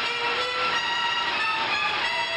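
Music from the opening credits of an early-1950s film, with several held notes changing pitch every half second or so, over a steady rushing noise.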